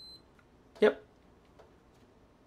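A high, thin electronic beep that stops just after the start, then one sharp click about a second in as a micro-USB charging plug seats in the Polaroid Cube camera's port, followed by a faint tick.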